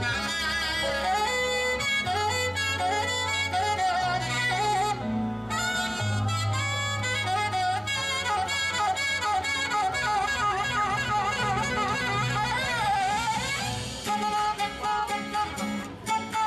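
Instrumental background music: a wavering lead melody over held bass notes, with a run of quick, even strokes near the end.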